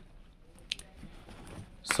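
Faint handling sounds of a cloth drawstring bag being opened and a hand reaching inside: soft rustling with a small click a little under a second in.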